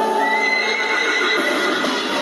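A horse whinnying in one long call, played as a sound effect in a recorded concert intro.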